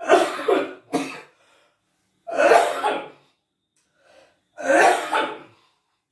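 A man coughing in several harsh bouts: a double cough at the start, then single coughs about two and a half and five seconds in.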